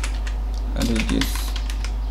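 Computer keyboard being typed on: a run of quick, irregular key clicks as a word is entered, over a steady low hum.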